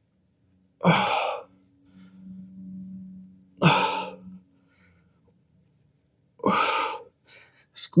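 A man exhaling hard in time with dumbbell chest press reps: three breaths about three seconds apart.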